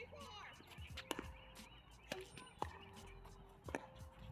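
Tennis ball struck by rackets and bouncing on a hard court during a doubles rally: a series of sharp pops, about one every second or so.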